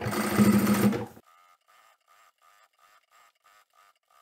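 Pro-Sew PS-198 sewing machine running steadily while top stitching through layers of cotton fabric beside a zip. It cuts off suddenly about a second in, and near silence follows.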